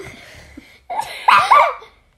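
A woman laughing breathily under her breath: a short burst at the start, then a louder, breathy one about a second in.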